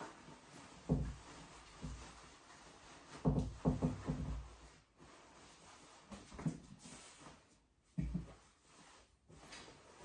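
Soft thumps and handling noise as bedding is spread and patted down on a mattress in a wooden crib: one thump about a second in, a quick run of several around three to four seconds in, and another near eight seconds.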